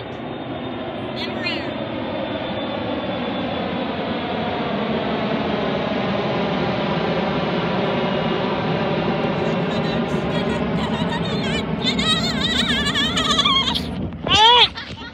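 Jet airliner climbing out after takeoff and passing overhead: loud, steady engine noise that builds over several seconds, peaks around the middle and eases slightly toward the end.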